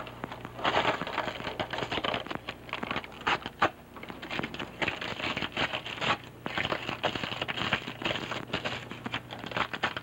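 Irregular rustling and crinkling with many small clicks, from hands handling something small, over a low steady hum.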